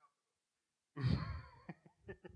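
Near silence for about a second, then a loud, breathy sigh from a person close to the microphone that fades away.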